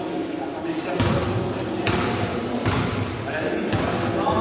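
A basketball bouncing on a gym floor, four bounces a little under a second apart, over background voices.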